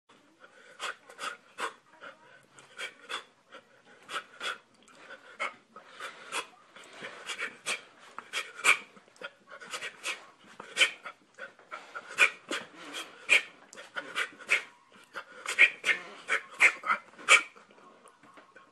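A man breathing hard and fast, about two sharp breaths a second, out of breath from a workout.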